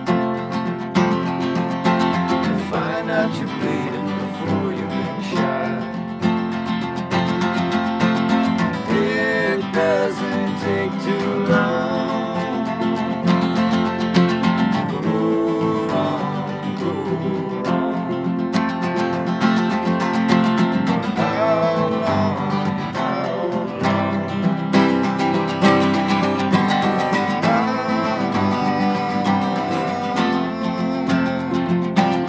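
Two acoustic guitars strumming steadily in a live acoustic rock-blues song, with wordless singing gliding over them at times.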